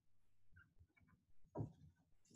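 Near silence in a quiet room, with faint scattered scratches of a marker on a whiteboard and one short, louder sound about one and a half seconds in.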